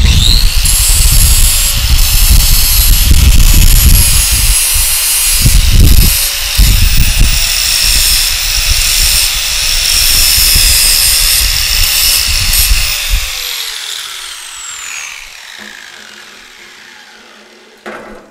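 Electric grinder spinning up with a rising whine and grinding on steel for about thirteen seconds. It is then switched off and winds down with a long falling whine.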